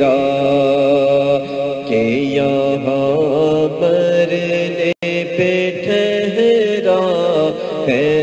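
A voice singing an Urdu manqabat, holding long, wavering notes between the words. The sound cuts out for an instant about five seconds in.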